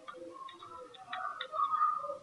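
Computer keyboard keys clicking as a short word is typed: a handful of separate, irregularly spaced key clicks.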